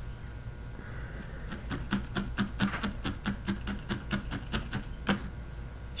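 Barbed felting needle in a pen-style holder stabbing wool roving into a burlap-covered pad, needle felting an ear into shape. It makes a quick, even run of soft ticks several times a second, starting about a second and a half in and stopping about five seconds in.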